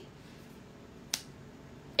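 A single short, sharp click about a second in, over faint room tone.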